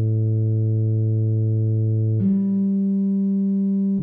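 Tuba part played back by notation software in long held notes: one low note sustained for about two seconds, then a higher note held to the end, with steady, unwavering tone.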